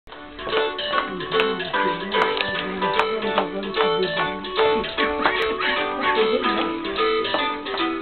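Music played on plucked strings, a quick run of notes with frequent sharp plucks.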